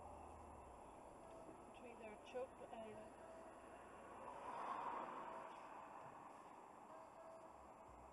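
Quiet car-cabin noise from a dashcam in slow traffic, with a faint voice briefly about two seconds in and another car passing close by around the middle.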